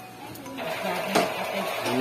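Quiet voice with music in the background, and a single click a little over a second in.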